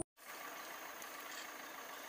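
Faint, steady background noise with no distinct events, following a brief dropout to silence at the very start.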